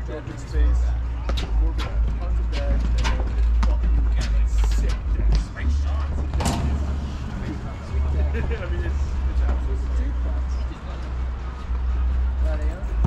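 Pickleball rally: paddles striking a hard plastic pickleball in sharp pops, roughly every half second for the first five seconds, the loudest about six and a half seconds in. A low rumble comes and goes underneath.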